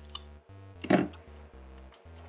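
A small sharp click just after the start, as flush cutters snip the tail off a zip tie, over steady chiptune background music.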